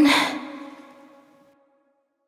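The song's closing vocal note ends with a breathy exhale, and its reverb tail fades out over about a second and a half into silence.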